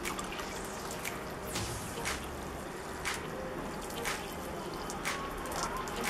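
Water showering from a plastic watering can's rose onto a moss-covered bonsai, a steady fall of water with a small sharper splash every second or so.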